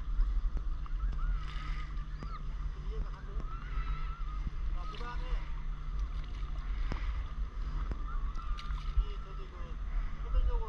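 Water sloshing and lapping around a stand-up paddleboard on calm sea, with a few short splashes, over a steady low rumble and faint distant voices.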